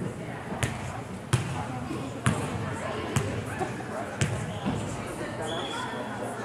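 A volleyball bounced on a hardwood gym floor five times, roughly a second apart, over people's voices.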